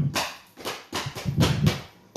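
Feet landing on the floor in a quick series of thumps as a dancer jumps in place through a seven-count jump.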